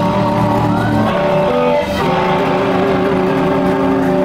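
Live electric blues-rock band playing: electric guitar over electric bass and drum kit, the guitar notes sustained and ringing, with a chord held steady through the second half.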